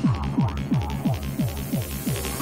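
Hard dance track playing through the DJ mix: a heavy kick drum whose pitch drops on each hit, about three beats a second, with the higher layers of the track stripped back.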